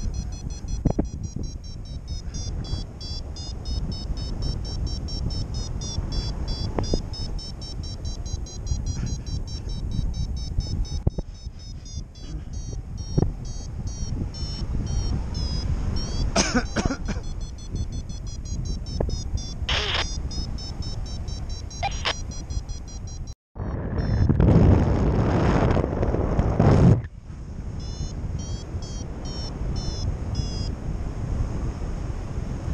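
Wind rushing over the microphone of a paraglider in flight, with a high electronic tone from the flight variometer wavering up and down in pitch. A few short rustles, then a louder rush of wind for a few seconds near the end.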